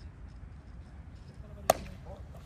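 A baseball bat hitting a pitched ball: one sharp crack near the end.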